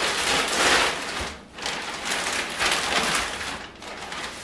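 A large plastic bag crinkling and rustling as a wreath is pulled out of it. It goes in two long stretches, with a short pause about one and a half seconds in.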